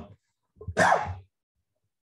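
A man coughs once, a single harsh cough about half a second in.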